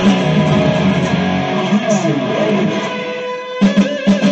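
Distorted electric guitar, an EVH Wolfgang Standard, played through an amp in a fast rock lead and riff. About three and a half seconds in, a held note cuts off abruptly and a few sharp chord stabs follow.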